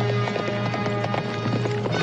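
Hoofbeats of horses galloping on dirt, a quick run of hoof strikes, under a dramatic music score.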